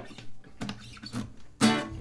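A guitar played tentatively: a few quiet plucked notes, then a louder strum near the end.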